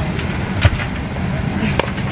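Steady low rumble of an airliner cabin, with two short clicks: one under a second in and one near the end.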